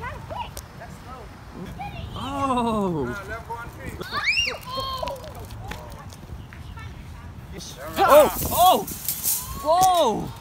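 Excited, wordless shouts and calls from a group of adults and children, with a high whoop about four seconds in and a burst of loud shouts near the end.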